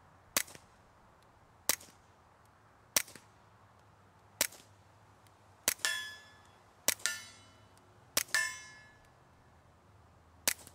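Integrally suppressed .22 LR pistol (TBA Suppressors Sicario, built on a Ruger Mark IV) firing seven shots, about one every 1.3 seconds, each a short report. The last three are each followed by a ringing clang of a steel target being hit.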